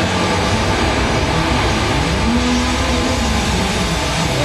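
Hard rock band playing loudly live: distorted electric guitar, electric bass and drums in a dense wall of sound. About halfway through, a single pitch rises and falls.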